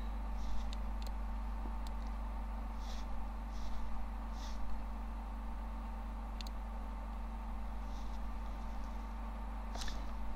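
Steady low electrical hum from the recording chain, with a few faint clicks and brief soft rustles scattered through it.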